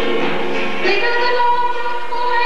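A woman singing a gospel song, with music behind her; about halfway through she holds one long note.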